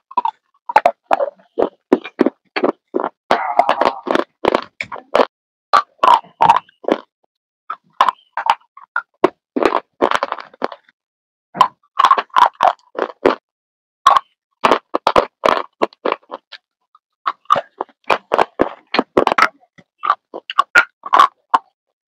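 Close-miked crunching of food being bitten and chewed: rapid runs of short, sharp crackles with brief pauses between bites.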